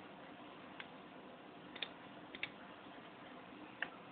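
Computer mouse clicking a few times over a faint steady hiss: single clicks and quick double clicks, the loudest near the end.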